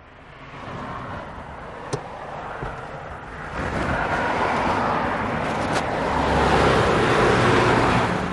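A Mitsubishi sedan pulls away and drives off past close by. Its engine and tyre noise swells steadily, loudest near the end, with two short sharp clicks, one about two seconds in and one near six seconds.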